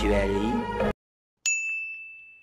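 A voice draws out a word for the first second and then stops. After a short silence, a single bright ding rings out and fades away over about a second.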